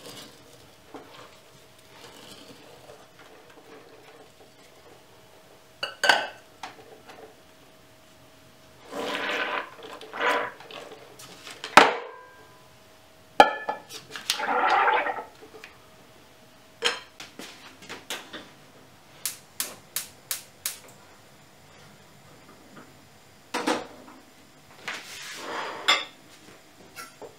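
Kitchenware being handled while sauerkraut is packed into a stoneware crock: a wooden stick working shredded cabbage, and a glass jar of water set on top as a weight. Scattered knocks and clinks of glass against ceramic, two short scraping bursts, and a quick run of light ticks.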